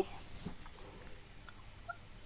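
Quiet pause with faint handling noise from a cloth measuring tape being gathered up over fabric, a couple of soft light rustles, and a brief faint pitched chirp near the end.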